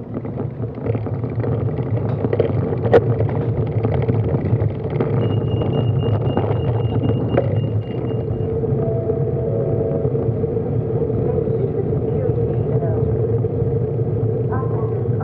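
Low steady rumble of a car engine and road noise, heard from a bicycle rolling slowly behind a car. There are two sharp clicks in the first few seconds and a thin high tone held for a few seconds in the middle.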